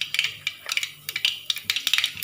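Spices tempering in hot oil in a pan, crackling with a quick, irregular run of sharp pops.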